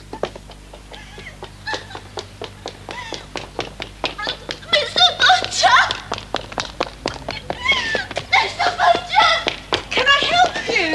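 Quick, clattering taps throughout, with a woman's high, wordless cries and yelps that grow loud from about five seconds in.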